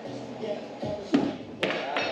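Two sharp wooden thuds about half a second apart, the first the louder: thrown hatchets striking the wooden boards of the lanes. Background chatter and radio music run underneath.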